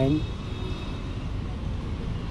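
Steady low background rumble, with the tail of a spoken word at the very start.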